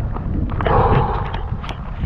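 Wind buffeting the microphone in a steady low rumble during rain, with scattered short ticks; a brief breathy "oh" comes about half a second in.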